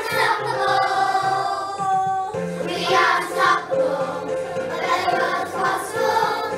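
A group of young children singing a song together as a choir, holding and gliding between sung notes.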